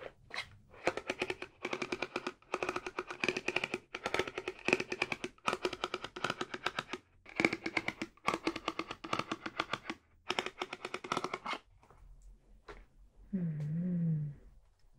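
A lipstick rubbed in short strokes on the camera lens, close to the microphone: a dense, rapid scratching friction in about seven bursts of one to two seconds each.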